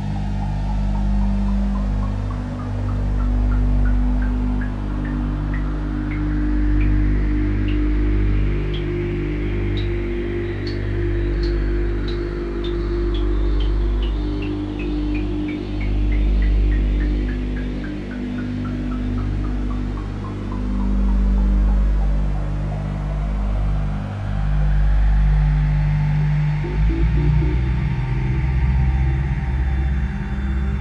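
Generative ambient electronic music on a modular synthesizer: steady low drones under a string of short pings that climb in pitch for about ten seconds and then fall back over the next ten, with slow rising and falling sweeps above. Near the end the low drone changes to a rougher, pulsing texture.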